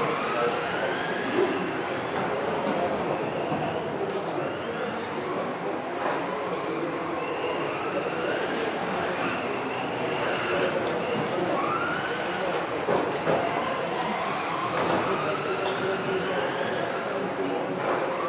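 Several radio-controlled racing cars running laps together, their electric motors whining in pitches that rise and fall over and over as the cars accelerate and brake.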